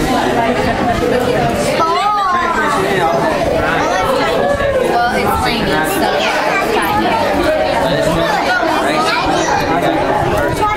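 A group of people talking over one another: steady, overlapping chatter with no single voice standing out.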